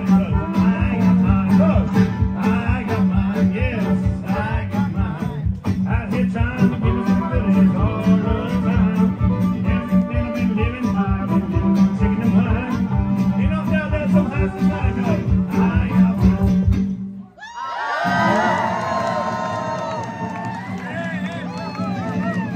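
A live country band with fiddle, guitar and drums plays a fast song over a steady driving beat. About seventeen seconds in the beat stops abruptly, and the fiddle and guitar hold long, sliding, wavering notes that slowly fade as the song ends.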